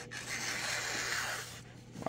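Emerson Commander knife's chisel-ground blade slicing through a sheet of glossy catalog paper in one steady cut of about a second and a half. This is a paper-cutting sharpness test, and the edge is very sharp.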